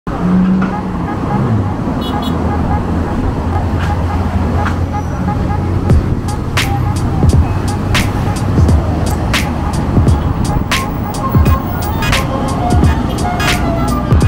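Road traffic: a car's engine passing, its pitch falling in the first second or two, over a steady low hum, with music carrying a regular beat of sharp hits from about six seconds in.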